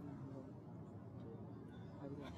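Quiet studio room tone with a faint, low murmur of voices.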